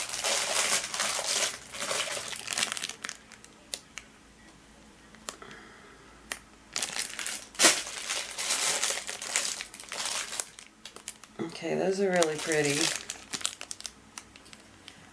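Crinkling of a clear plastic bag as beaded necklaces are handled and taken out of their packaging, in bursts with a quieter pause in the middle and one sharp crackle. A brief stretch of voice comes near the end.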